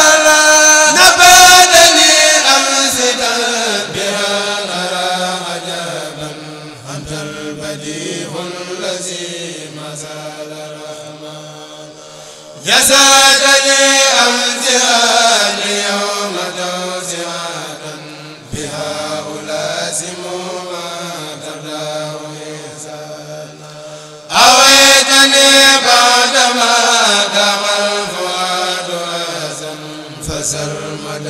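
Male kourel chanting Arabic religious verse (Mouride khassaid) in unison into microphones, in long held, gliding phrases. The group comes in loudly again about 13 s and 25 s in, and each phrase slowly fades.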